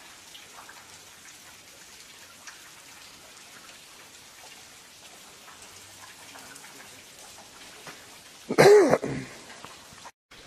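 Steady patter of falling water drops, with scattered small drip ticks. About eight and a half seconds in comes one loud, short voice-like sound, under a second long, whose pitch rises and then falls.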